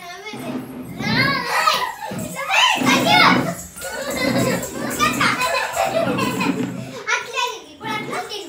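Young children's high-pitched excited shouts and squeals in repeated bursts while they play a running game.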